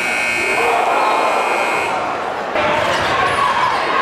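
Gymnasium game-clock buzzer sounding one steady, high-pitched tone that cuts off suddenly about two seconds in, signalling that the period's clock has run out to 0.0. Crowd noise runs underneath and returns louder near the end.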